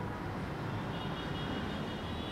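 Steady background room noise, an even hiss with a low hum and a faint high tone, with no distinct events.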